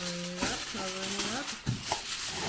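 A person's voice making two drawn-out vocal sounds, over faint rattling as seasoning flakes are shaken from a packet onto a tray of sushi bake. A short knock comes near the end.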